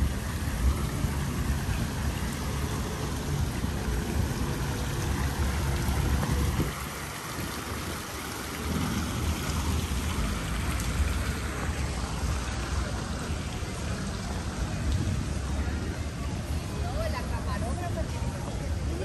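Wind rumbling unevenly on a phone microphone over a steady hiss; the rumble drops away briefly about seven seconds in.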